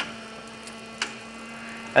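Irrigation system running with compost extract being drawn through its in-line injector: a steady hum with a sharp click about once a second.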